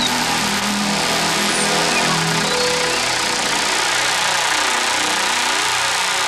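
Electronic synthesizer music taken over by a steady, loud, roaring noise wash like a jet's rush, with faint held synth tones underneath.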